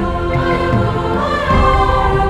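A two-part treble (SA) choir singing rhythmic invented syllables in harmony over instrumental accompaniment with a steady low beat.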